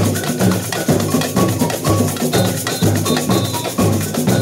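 A samba percussion band (bateria) playing: big surdo bass drums keep a steady beat about twice a second under dense strokes of hand-held drums, with short ringing high notes on top.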